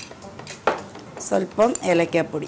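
A metal spoon clinking against a bowl, with one sharp clink a little under a second in.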